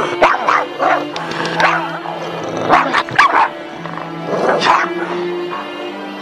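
A small Boston terrier–pug mix dog barking and yipping in about four short bursts, over a horror-trailer music track with long held notes.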